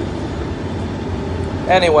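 Steady low rumble of a moving vehicle heard from inside the passenger cabin. A man's voice comes in near the end.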